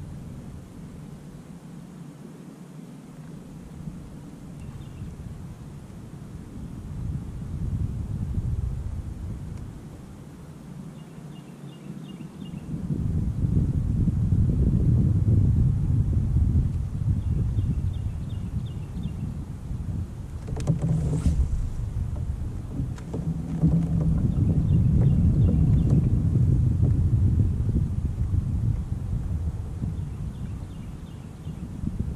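Wind rumbling on the microphone of a kayak on choppy water, growing stronger about halfway through. A single sharp knock comes a few seconds later.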